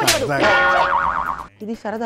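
A cartoon-style comedy sound effect: a sudden sharp hit, then a falling, wobbling boing tone lasting about a second and a half, before a voice starts near the end.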